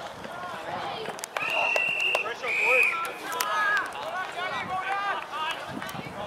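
Umpire's whistle blown twice, a long steady blast about a second and a half in and a shorter one just after, with players and onlookers shouting around it.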